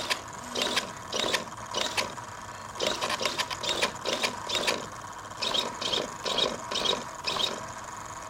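Hitec servos on a large RC aerobatic plane whirring in short bursts, about two a second with a brief pause midway, as the elevator and rudder are flicked back and forth. Each move stops cleanly without the servos oscillating or jittering on, powered from a 6.6-volt A123 pack.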